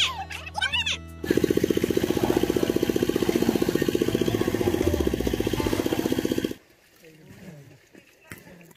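A woman laughing briefly, then a loud edited-in sound effect with an even, rapid pulse of about ten beats a second. It lasts about five seconds and cuts off suddenly.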